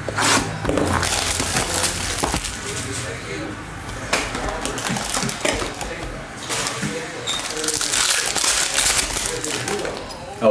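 Crinkling and rustling of a foil trading-card pack wrapper as it is handled and opened, with the cards being handled.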